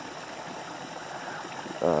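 Small woodland stream running steadily, an even rush of water.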